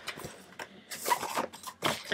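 Flip-book cards in a small binder being handled, with a few short rustling flicks, the strongest about a second in and near the end.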